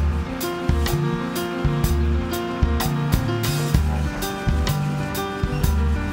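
Live band playing an instrumental passage with no singing: a drum kit keeping a regular beat under a repeating bass line and sustained keyboard and guitar notes.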